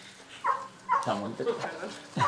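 Speech: a person talking in short phrases at a moderate level, after a brief lull at the start.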